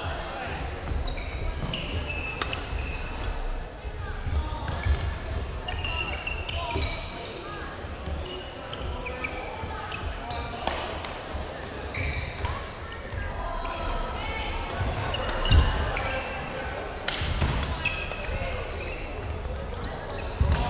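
Badminton rallies on a hardwood gym floor: repeated sharp racket strikes on the shuttlecock, sneaker squeaks and footfalls, over a murmur of voices echoing in the large gym. One louder thud comes about three-quarters of the way through.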